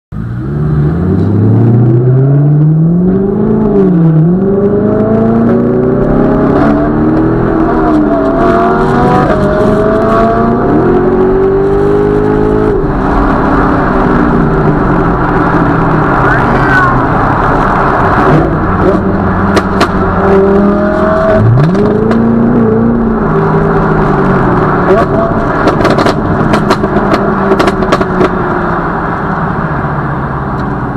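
Sports-car engines accelerating hard through the gears, the pitch climbing and dropping at each shift, heard from inside the C7 Corvette's cabin. Sharp clicks come in the last third.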